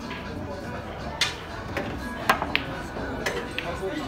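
Pool cue striking the cue ball, then sharp clicks of pool balls hitting each other about a second later, over faint background chatter and music.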